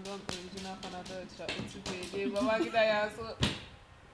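Women's voices chanting a sing-song counting-game rhyme. Quick light taps come through in the first second and a half, fingers on a table top, with one sharper tap near the end.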